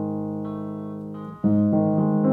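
Grand piano chords: a held chord slowly fading, then a new chord struck about one and a half seconds in and left to ring.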